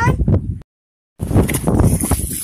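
Water being bailed from a bucket and splashing into a shallow river. It starts abruptly about halfway through, after a brief dead-silent gap, and runs as a noisy, churning splash.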